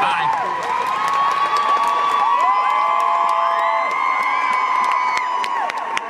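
Concert audience cheering and screaming, with many high-pitched screams rising and falling over each other and scattered clapping. A low sustained note from the stage fades out about two seconds in.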